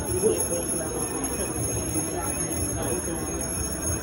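Indistinct background voices with no clear words, over a steady hum of room noise.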